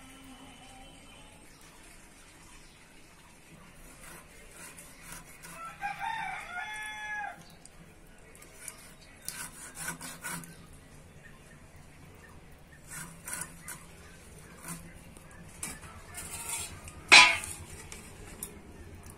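A rooster crows once, about six seconds in. Around it come short scrapes and knocks of a boti blade cutting through fish, with one sharp, loud knock near the end.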